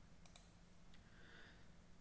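A few faint keyboard and mouse clicks over near-silent room tone.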